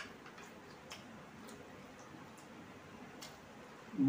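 Faint, irregular mouth clicks and smacks of people chewing steamed momos.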